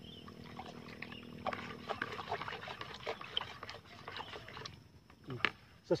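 A wooden stick stirring water in a plastic bucket: irregular knocks of the stick against the bucket and water sloshing, as powder and granules are dissolved. The stirring dies away about five seconds in.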